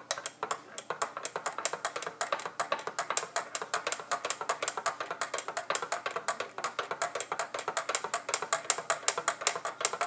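Metal spoon clinking quickly and repeatedly against the inside of a ceramic mug while stirring hot cocoa, about six to eight clinks a second.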